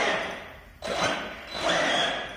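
Electric RC truck (Arrma Senton 4x4) given three short bursts of throttle, its motor and tyres scrabbling against steel ramp plates as it tries to climb onto the lift.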